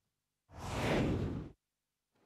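A whoosh sound effect for a TV news transition: a single swell of noise about a second long, starting about half a second in, rising and then fading away.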